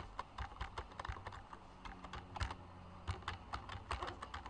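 Computer keyboard being typed on: a quick, irregular run of about a dozen faint key clicks as a word is typed out.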